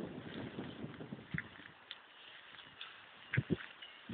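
Faint outdoor background with scattered light ticks, and two soft thumps in quick succession near the end.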